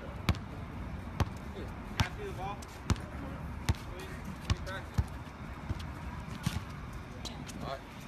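A basketball being dribbled on a hard court: about ten sharp bounces, one roughly every second, with low voices in between.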